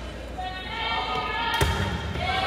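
High voices calling out during a volleyball rally in a gym, getting louder, with one sharp smack of a volleyball being hit about one and a half seconds in.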